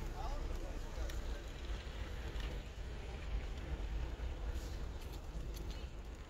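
Car in motion heard from inside the cabin: a steady low rumble with a faint even hiss above it.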